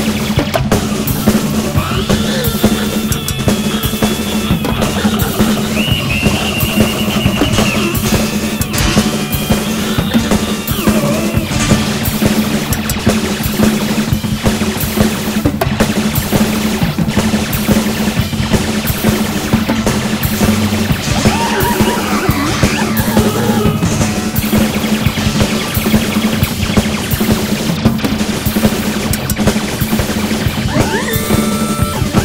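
A large rock drum kit played along to a prog-rock backing track: busy drumming with cymbal crashes over a keyboard lead that slides in pitch at times.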